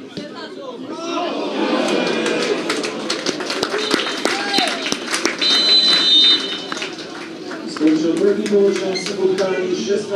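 Football spectators talking, shouting and clapping in the stand. A referee's whistle gives a short blast about four seconds in and a longer steady blast about five and a half seconds in.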